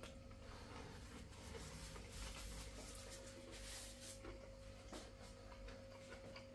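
Faint chewing and mouth sounds from a man eating a mouthful of meat and potato pie, soft scattered clicks over quiet room tone with a faint steady hum.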